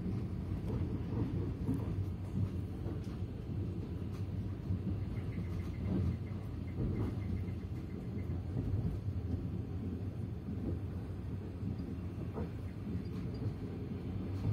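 Steady low rumble of a moving train heard from inside the carriage, its wheels running along the rails, with a few faint clicks.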